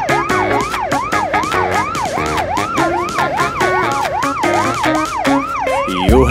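Cartoon siren sound effect for a tow truck, a fast yelp rising and falling about twice a second, over an upbeat instrumental backing track with a steady beat.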